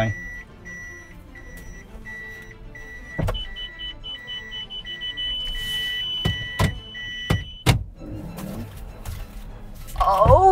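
Toyota minivan's parking sensor beeping inside the cabin while reversing into a bay: a steady beep about twice a second, joined about three seconds in by a higher, faster beep that turns into a continuous tone, the warning that the car is very close to an obstacle. Both stop with a sharp click about three quarters of the way through, among a few other clicks.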